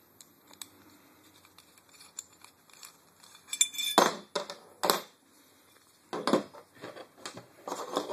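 Small metal parts being handled and set down on a tabletop: the Allen wrench and the rail adapter pieces clinking and knocking. Quiet at first, then light clinks about halfway through, two louder knocks, and a few more knocks toward the end.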